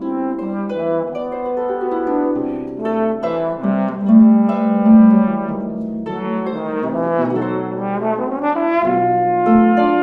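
Trombone playing a slow, sustained melody over plucked concert harp accompaniment. It is loudest about four to five seconds in.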